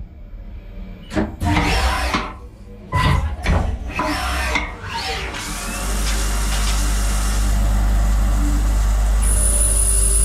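Haas CL-1 CNC lathe machining a part: a few short bursts of cutting noise in the first five seconds, then coolant spraying onto the spinning workpiece as a steady loud hiss over a low hum. A high steady whine joins near the end.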